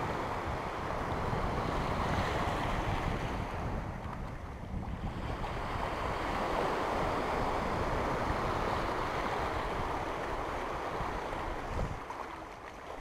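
Small waves breaking and washing over the sand in the shallows, with wind buffeting the microphone. The wash eases briefly about four seconds in, then builds again.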